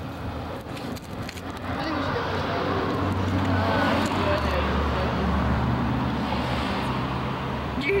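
A road vehicle driving past on the street: its rumble builds over the first couple of seconds, is loudest around the middle and slowly fades, with faint voices underneath.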